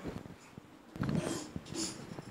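Hand-held microphones being handled, with small knocks and a short breathy burst into a microphone about a second in and again near the end.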